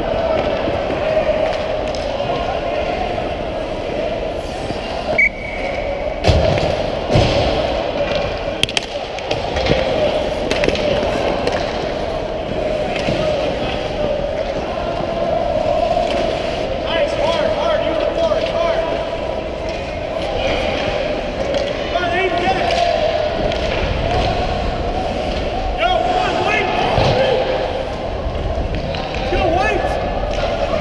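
Ice hockey played close by: sticks and puck knocking, with a cluster of sharp knocks about six to nine seconds in. Young players' and spectators' voices call out over a steady hum.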